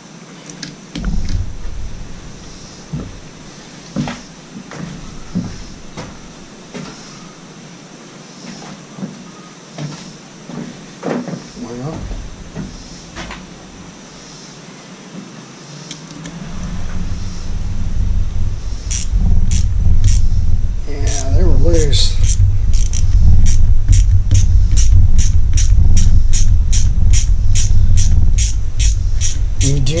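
Light clicks and taps of a small socket wrench working the stator bolts on a Mercury Thunderbolt 500 outboard. About halfway in a loud low rumble sets in, and over it a ratchet clicks evenly, about three times a second.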